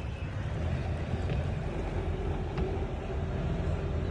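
Abra boat's motor running steadily while the boat is underway, a low rumble with a faint steady hum.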